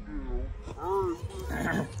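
A person's drawn-out vocal calls, not words, rising and falling in pitch: one at the start and another about a second in, then a short breathy hiss near the end.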